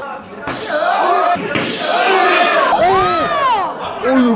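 Excited shouts and drawn-out exclamations from people watching an MMA fight, with a few short thuds mixed in.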